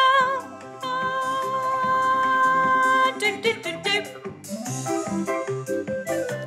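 A recorded song with singing: a voice holds a long note that wavers into vibrato, breaks off briefly, then holds another long steady note. About three seconds in, this gives way to a choppy, rhythmic passage of short, clipped sounds.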